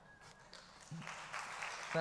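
Fairly quiet at first, then audience applause breaks out about a second in and carries on steadily.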